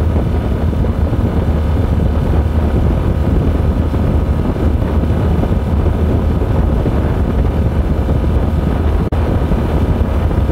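Suzuki DT55 two-stroke three-cylinder outboard running at a steady pitch under way, held at about 3000 rpm in limp mode caused by an oil-injection fault, with wind on the microphone. The sound dips for an instant about nine seconds in.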